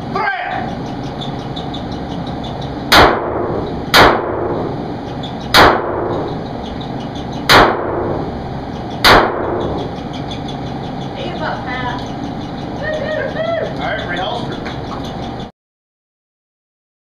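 Handgun fired five times, unevenly spaced over about six seconds, each shot sharp and loud with a short echo off the arched range walls.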